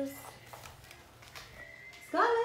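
Faint rustling and a few soft knocks of a person getting up and moving away, with a faint steady high tone coming in near the end.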